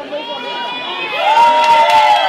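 Crowd of guests cheering with many high-pitched shouts, growing louder about a second in.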